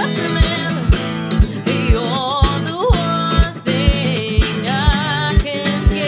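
Acoustic guitar strummed with a low thump on each beat, about two a second. From about two seconds in, a voice sings with vibrato over it.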